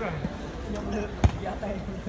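Voices of spectators chattering, with one sharp thump of the volleyball a little over a second in.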